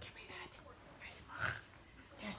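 Soft whispering voice, with a brief louder sound about one and a half seconds in.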